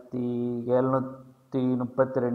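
A man speaking in a flat, drawn-out, almost chant-like voice, his syllables held at a level pitch, with a short break partway through.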